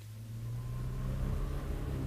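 Radio-drama sound effect of a car engine running, a steady low drone that fades in and grows louder.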